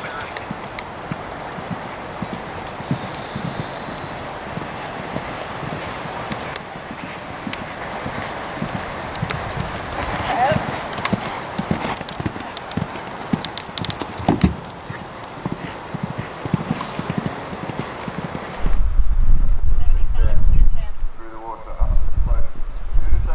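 Event horse galloping across grass on a cross-country course: a quick, uneven run of hoofbeats over a steady outdoor hiss. Near the end, after a cut, a loud low rumble takes over.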